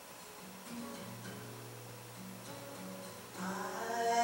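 Acoustic guitar fingerpicked in a quiet instrumental passage, a low bass note ringing under the picked notes from about a second in. It grows louder near the end.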